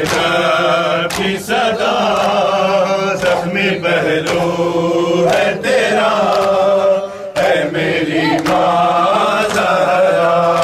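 Men chanting a Shia nauha lament together, with sharp hand-on-chest matam strikes falling about once a second.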